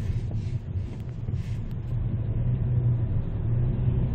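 Steady low rumble of engine and road noise heard from inside the cabin of a Hyundai Avante MD (Elantra) sedan on the move, getting slightly louder about halfway through.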